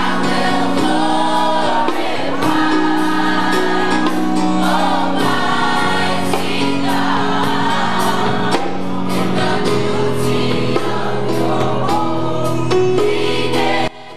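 Youth gospel choir singing together, cut off abruptly just before the end.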